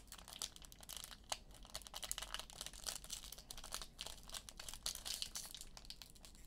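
Foil wrapper of a Mosaic Draft Picks trading-card pack crinkling and tearing as it is peeled open by hand: a quick, uneven string of small crackles.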